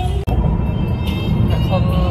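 Steady low road and engine rumble inside a moving car's cabin, with music over it; the sound drops out sharply for an instant about a quarter second in.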